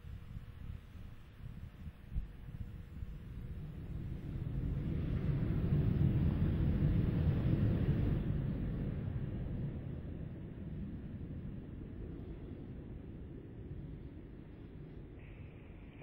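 Low rumbling, wind-like noise with no clear tones. It swells to its loudest about six to eight seconds in, then slowly fades away.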